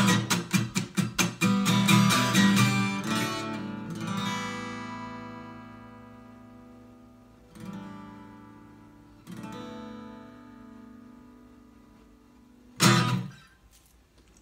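Acoustic guitar strummed fast and hard for the first three seconds. A final chord then rings and slowly fades, and two more single strokes at about 7.5 and 9 seconds are left to ring out. A short, loud hit on the guitar comes near the end.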